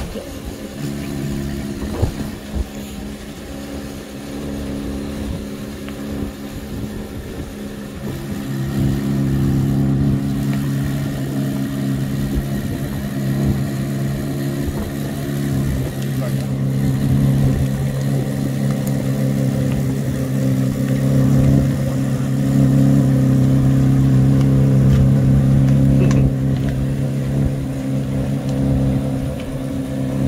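2023 Corvette C8 Z06's flat-plane-crank V8 idling steadily through its stock exhaust, getting louder about eight seconds in.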